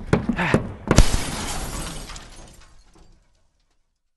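Microphone knocked about while a man sprints across plywood roof sheathing: a sharp hard knock about a second in, followed by a noisy rush that dies away over about two seconds.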